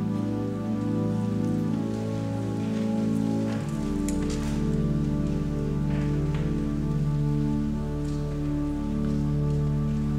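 Pipe organ playing slow held chords, with a deep pedal bass note coming in about four seconds in. A few faint rustles sound over it.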